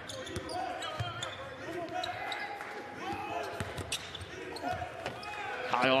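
Live court sound in a basketball arena: a basketball dribbled on the hardwood floor and sneakers squeaking during half-court play, with short sharp bounces and squeaks over a steady hall background.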